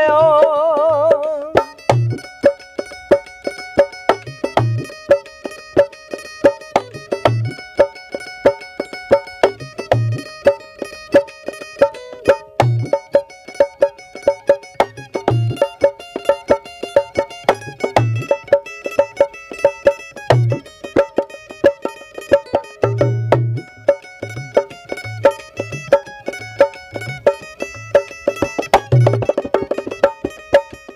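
Mandolin picking a quick plucked melody in an instrumental interlude of a Punjabi song, with a dholak's deep bass strokes falling about every two and a half seconds. A held sung note fades out in the first second or two.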